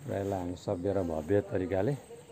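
A man's voice talking in quick phrases; speech only.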